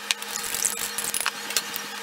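Light, scattered clicks and clinks of a small wire whisk and utensils against a ceramic mug of beaten egg, over a faint steady hum.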